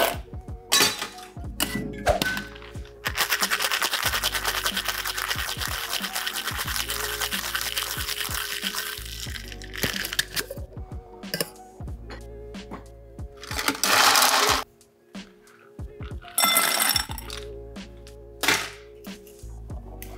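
Metal tin-on-tin cocktail shaker shaken hard with ice, the second shake after a dry shake with egg white: a fast, dense rattle of ice against the tins for about six seconds. Afterwards come a few separate louder metal knocks and clinks as the tins are handled and the drink is strained over ice.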